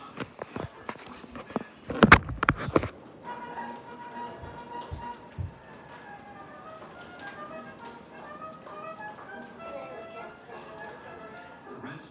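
A clatter of knocks and rubbing in the first three seconds, loudest about two seconds in, as the phone is handled and set down. After that, background music with a voice runs on at a steady moderate level.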